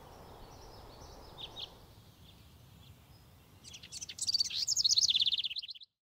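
A songbird singing: two short chirps about a second and a half in, then a loud burst of rapid, repeated high notes from about four seconds in that cuts off abruptly just before the end.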